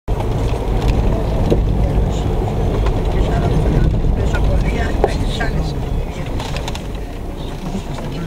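Car driving on a gravel forest road, heard from inside the cabin: a loud, steady low rumble of engine and tyres on the rough surface. It starts suddenly at the beginning.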